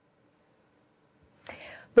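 Near silence, then about a second and a half in a short breathy sound, a person drawing breath, just before a woman starts to speak.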